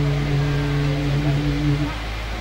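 A man's voice holding one long, steady chanted note into a handheld microphone, stopping near the end, over a steady low hum.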